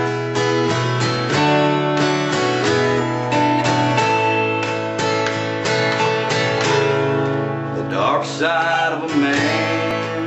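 Steel-string acoustic guitar strumming steady chords, with an electric guitar playing along through a small amp in an instrumental break of a country song. Near the end a single note bends and wavers over the chords.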